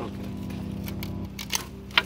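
Two short, sharp clicks about half a second apart near the end, over a steady low hum.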